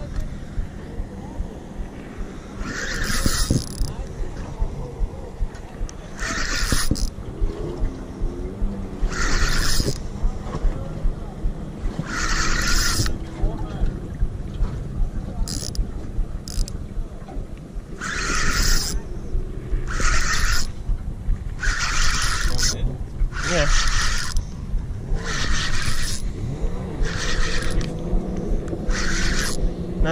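Fishing reel being wound in short bursts, about a dozen times at intervals of two to three seconds that shorten toward the end, as a heavy fish is pumped and reeled in. A steady low rumble of wind and water on the camera runs underneath.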